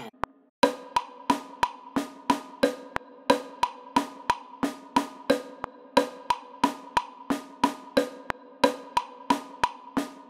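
Snare drum together with two wood blocks, one pitched higher than the other, playing the interlocking rhythms of the binary codes for A, W and lowercase z (each 1 a strike, each 0 a rest), a steady pulse of strikes about three a second starting about half a second in.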